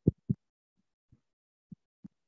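Short dull thumps and clicks from keyboard keys and a mouse, picked up by the desk microphone: two loud ones right at the start, then three fainter ones spread over the next second and a half.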